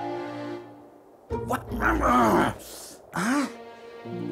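Background music fading out, then a cartoon polar bear cub's wordless vocal grunts and groans: one longer burst in the middle and a short one near the end.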